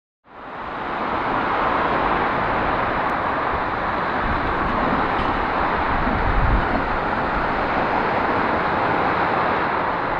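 Steady rush of road traffic from a busy motorway below, fading in over the first second, with a low rumble swelling about six seconds in.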